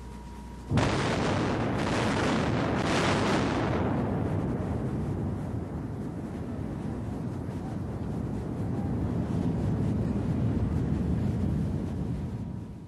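An Iowa-class battleship's 16-inch main guns firing a salvo. A sudden blast comes under a second in, with further reports over the next two seconds, followed by a long, heavy rumble.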